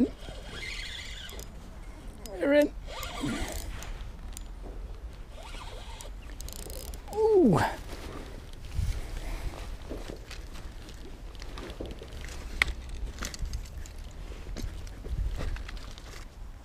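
Spinning reel being worked and small clicks of tackle handling while a hooked fish, a small chub, is played on the line. Two short falling vocal exclamations come about two and a half and seven seconds in.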